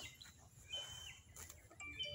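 Quiet outdoor ambience with a few faint, short, high bird chirps, about a second apart, and one brief click.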